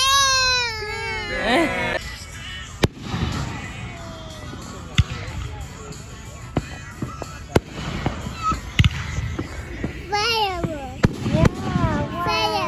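Fireworks going off: sharp bangs every second or two, with crackling noise between them. A child's high voice is heard in the first two seconds and again near the end.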